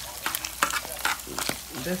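Ground meat frying in a pan, stirred and scraped around with a spatula: a steady sizzle under irregular scraping strokes against the pan.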